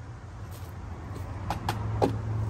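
Two or three light knocks on pallet wood near the end, as a plastic tub of screws and a cordless drill are set down, over a steady low hum.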